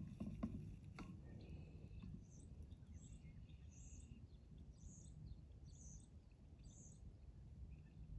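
Near silence with a low outdoor rumble and a few light clicks in the first second. Then comes a run of about six faint, high, short chirps, evenly spaced a little under a second apart, from a calling bird or small animal.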